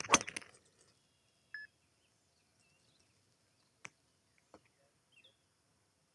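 Mizuno ST190 driver striking a golf ball off a tee in a full swing: one sharp, loud impact crack right at the start, with a brief ring after it. A few faint bird chirps and two small clicks follow.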